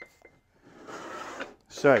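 A small wooden box being slid and shifted across a wooden workbench top: a rough scrape lasting about a second.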